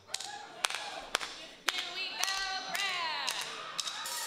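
A pause in a live band's music on stage: a few scattered sharp taps and clicks, and, near the end, a short pitched sound that slides down in pitch.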